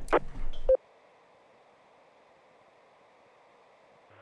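The end of a man's voice, a short beep about two-thirds of a second in as the transmission ends, then near silence with a faint hiss.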